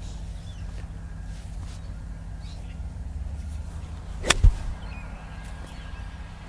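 An iron golf club striking a ball: one sharp, crisp click about four seconds in, with a short low thud right behind it.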